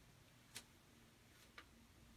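Near silence: room tone with two faint, brief clicks, one about half a second in and another about a second and a half in.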